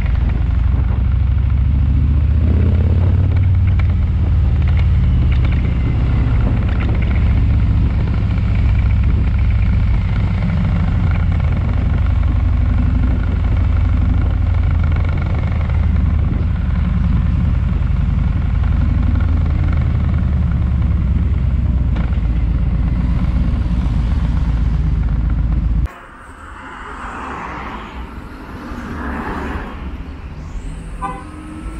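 Harley-Davidson Electra Glide's V-twin engine running steadily, the motorcycle riding through city traffic, heard as a loud low rumble. About 26 seconds in it cuts off suddenly to quieter street traffic sound.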